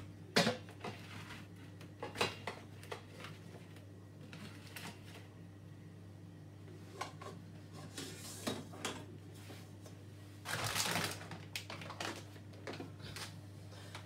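A steady low hum with scattered light clicks and knocks, and a short rustling hiss about ten and a half seconds in.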